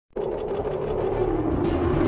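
News-programme intro theme music that starts abruptly with a held droning tone over a low rumble and a fast, flickering high texture.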